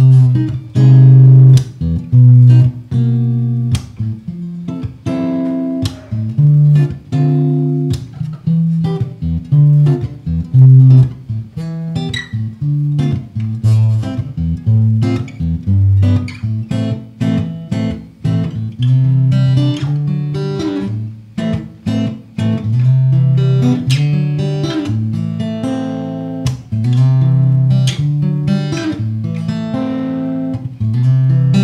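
Hofma HMF250 steel-string acoustic-electric guitar fingerpicked without a pick, bass notes under a melody, played through a valve amplifier on its cleanest setting into a 4x12 speaker cabinet.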